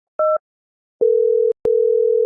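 A short beep, then two steady single-pitch telephone tones, the second about twice as long as the first: the sound of a phone call going through on the line.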